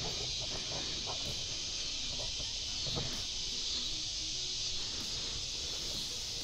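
Steady chorus of insects such as crickets, an even high-pitched hiss, with a few faint scattered rustles.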